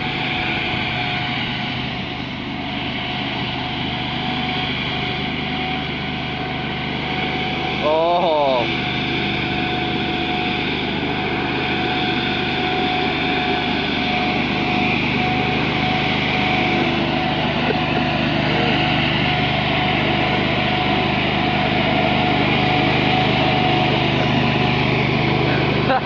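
Ventrac compact tractor's engine and front-mounted leaf blower running steadily while blowing leaves: a low engine drone under a steady high whine, a little louder after about eight seconds.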